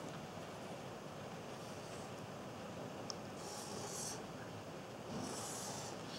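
Faint felt-tip marker strokes on paper: two short scratchy strokes, about three and a half and five seconds in, over quiet room background.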